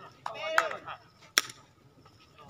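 A sepak takraw ball struck hard by a foot: one sharp smack about one and a half seconds in. A player's short shout comes just before it.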